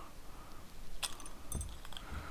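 A few faint metallic clicks and clinks of a steel spanner working an M8 nut on a bolt, with a soft knock about one and a half seconds in.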